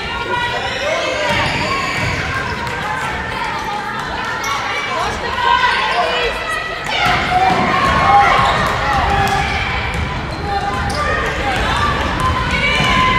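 Basketball being dribbled on a hardwood gym floor, with players' and spectators' voices and shouts mixing and echoing in the gym.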